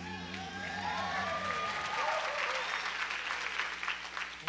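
Concert audience applauding after a song ends, with a few voices calling out in the first couple of seconds. The clapping builds quickly and stays dense.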